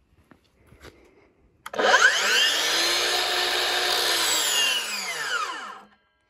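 DeWalt 60V FlexVolt 12-inch sliding miter saw motor starting up about two seconds in. Its whine rises in pitch for over a second, holds briefly, then falls as the blade winds down to a stop near the end. The ramp-up is slow, a little slower than a corded miter saw's.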